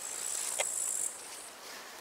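High-pitched chirring of meadow insects, strongest through the first second and then fading, with one short click just over half a second in.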